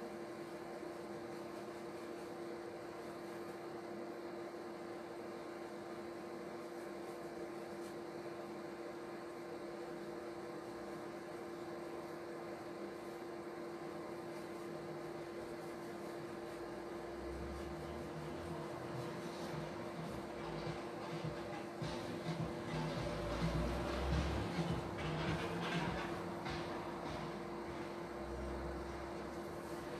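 A steady electrical hum on one clear tone with a haze of room noise. In the last third come low thumps and scattered rustling, handling sounds as the painter moves and reaches for things.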